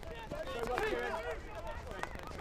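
Male field hockey players shouting and calling to each other on the pitch, several voices overlapping, with a few sharp knocks among them.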